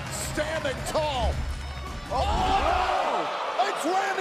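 Wrestling TV broadcast audio: excited voices crying out in rising-and-falling shouts over music with a heavy bass that stops about three seconds in, with a few sharp thuds from the ring.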